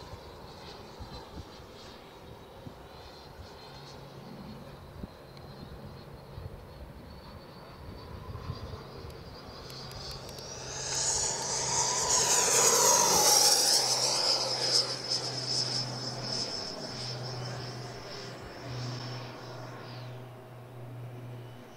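The Schubeler 120 mm electric ducted fan of a Sebart Avanti XS RC jet, whining high in flight. The sound swells into a loud rushing pass about ten seconds in, its pitch drops as it goes by, and it fades back to a steady whine.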